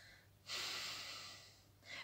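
A woman's soft breath drawn in during a pause in her talk, a faint hiss of about a second that starts half a second in and fades just before she speaks again.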